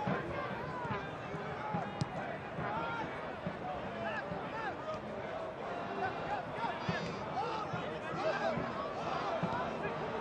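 Field-level soccer stadium ambience: a steady bed of crowd chatter and scattered shouts from voices on and around the pitch, with a single sharp thud of a ball being kicked about two seconds in.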